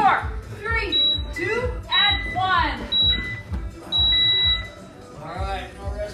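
Gym interval timer beeping a countdown: three short high beeps a second apart, then one longer beep as it reaches the minute mark, the signal to switch exercises.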